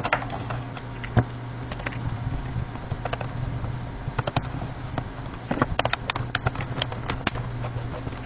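Plastic memory-compartment cover being fitted onto a laptop's underside: scattered light plastic clicks and taps as it is seated and pressed into place, more of them in the second half, over a steady low hum.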